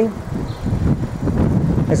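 Wind buffeting the microphone: an uneven low rumble in a gap between words.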